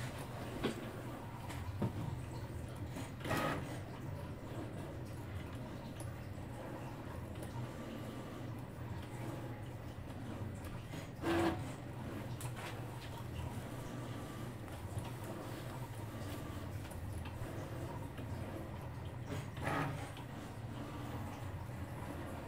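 Cricut Maker 3 cutting machine running a cut in vinyl: a steady low motor hum as the blade carriage travels and the mat feeds back and forth. Brief louder whirs come about three, eleven and twenty seconds in.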